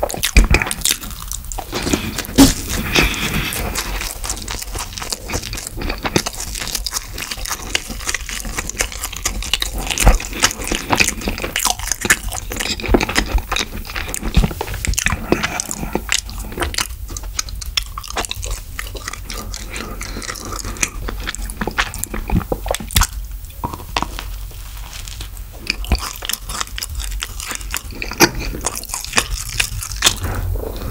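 A person chewing and biting into Orion Choco Pies close to the microphone: a dense run of small mouth clicks and smacks, with a few quieter stretches in the second half.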